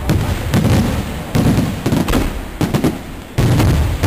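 Aerial fireworks shells bursting close overhead: a rapid, irregular series of loud bangs and booms, a few a second, each followed by low rumbling. The loudest bang comes just before the end.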